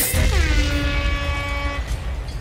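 Sound-system music coming in on heavy bass, with a pitched tone that slides down, holds for about a second and a half, and fades near the end.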